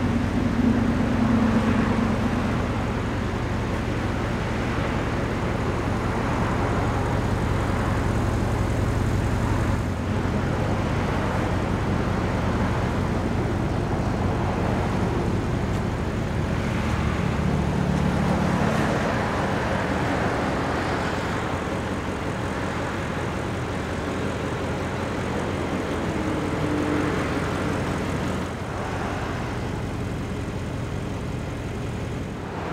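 Steady outdoor vehicle rumble with a constant low hum underneath, swelling briefly a little past the middle.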